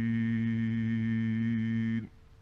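A man's voice in Quran recitation, holding one long, perfectly steady note at the close of a verse, then stopping abruptly right at the end.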